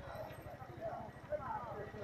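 Faint voices of people talking, over a low, fluttering rumble.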